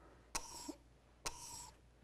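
Two faint strokes of a stylus on a touchscreen display as hatching lines are drawn, each a light tap followed by a short scratch lasting under half a second, about a second apart.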